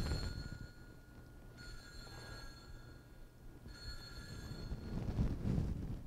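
Altar bells (Sanctus bells) rung three times, about two seconds apart, each a bright ring that fades in about a second. They mark the elevation of the consecrated host at Mass.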